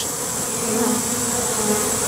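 A swarm of honeybees in flight, a steady, even buzzing hum. The swarm has taken to the air again, like a fresh swarm, although its queen is caged in the box below.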